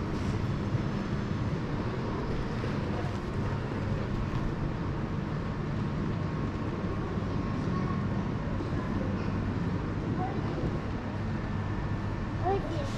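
Steady low hum and rumble of a covered railway station platform.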